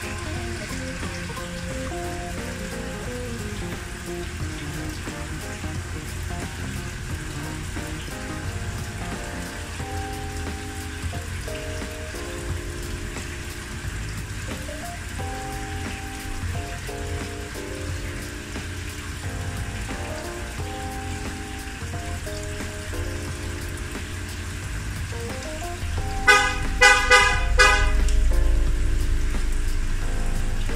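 Light background music over a steady watery hiss of aquarium sponge filters bubbling. Near the end, a few loud horn-like honks cut in over the music.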